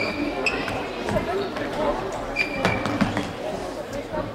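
Indoor football play on a sports-hall floor: the ball being kicked and bouncing, and shoes squeaking briefly several times, with shouting and chatter from players and spectators echoing in the hall.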